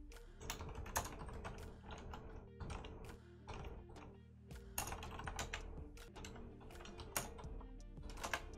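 Typing on a computer keyboard: irregular runs of keystroke clicks as terminal commands are entered.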